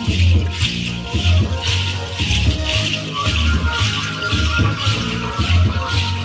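Dance music with rattles shaken in a steady rhythm over a low, evenly repeating beat.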